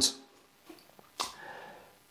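A man's short, quiet breath in through the nose a little past halfway, in a pause between spoken sentences, with a faint click just before it.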